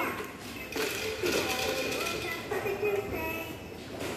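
A toddler's light-up electronic toy plays electronic sounds and short held melodic notes, with a quick rising sound effect at the start.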